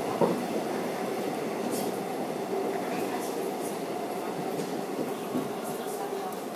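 Seoul Metro 4000-series subway train running at speed, heard from inside the leading car: a steady rumble of wheels on rail with a faint steady tone, and one sharp knock just after the start.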